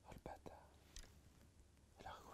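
Near silence: faint room tone, with a breathy murmur and a few faint soft clicks in the first half second and another click about a second in.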